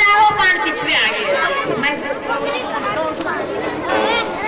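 Several people talking over one another: loud, overlapping chatter with no single clear speaker.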